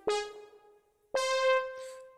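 Two single piano-like notes from a software keyboard instrument in MuseScore, played one at a time from a MIDI controller keyboard: the first struck at the start and left to decay, the second, higher note struck about a second later and held until it cuts off near the end.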